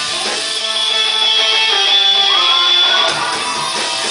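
Live rock band playing, with strummed guitar to the fore. A high note is held for about two seconds from about a second in, while bending pitches move beneath it.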